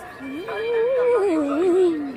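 A voice in one long, wavering, drawn-out call that rises and then slides back down in pitch over nearly two seconds.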